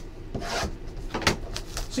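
Hands sliding and rubbing a cardboard trading-card box on a table: a few short scraping, rustling strokes.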